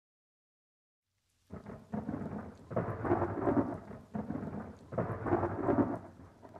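Thunder rumbling in about four rolling swells, starting after a second and a half of silence.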